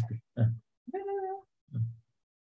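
Brief fragments of a man's voice heard over a video call, with a half-second steady, high-pitched call about a second in between them.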